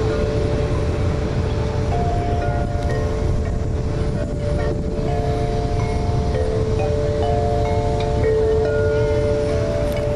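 Wind buffeting the microphone, with a slow series of long, steady chime-like tones at a few different pitches that overlap and change every second or two.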